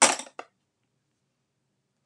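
A small hand tool set down on a hard worktable: a brief clatter, then a single light tap about half a second in.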